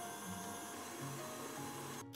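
Stand mixer running steadily on its whisk attachment, beating eggs into choux pastry dough, with a faint, even motor whine.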